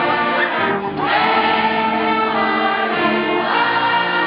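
A high school marching band's brass, sousaphones among them, playing a slow alma mater as a large crowd of students sings along. The chords are held, with a short break between phrases a little under a second in.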